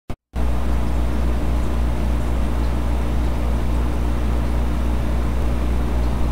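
Steady low electrical hum of reef-aquarium pumps running, with an even hiss over it. It starts abruptly a moment in, right after a brief click at the very start.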